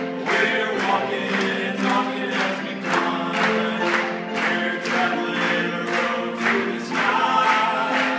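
Male gospel vocal trio singing in close harmony, with a steady beat of about two strokes a second under the voices.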